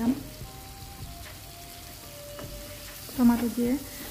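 Tomato wedges frying gently in hot oil and spice paste in a metal pan, stirred with a wooden spatula. A voice speaks briefly near the end.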